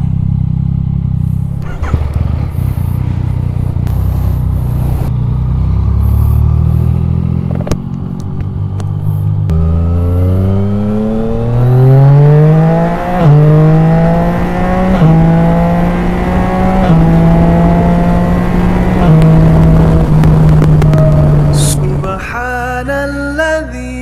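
Yamaha Tracer 900 GT's three-cylinder engine, likely through an Akrapovic exhaust. It first runs low and uneven, then accelerates from about halfway in with a rising note. It dips at a gear change and then holds a fairly steady pitch, with a few small steps as it rides on.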